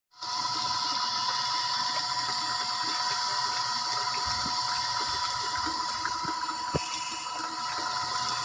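Electric jet pump running, its discharge pipe pouring a steady stream of water into a drum with a constant splashing hiss over a steady high hum, with a few soft knocks in the second half.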